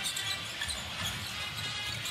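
Basketball being dribbled on a hardwood court, low thuds under steady background music.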